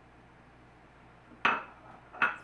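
A single sharp clink of kitchenware, a container or dish set down hard on the stone countertop, about a second and a half in, ringing briefly.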